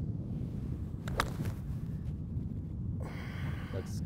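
A golf iron strikes the ball with a single sharp click about a second in, over a steady low rumble of wind on the microphone. A brief rush of noise follows about a second before the end.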